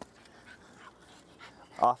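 A small leashed dog whimpers faintly a few times, with a single short spoken command near the end as the loudest sound.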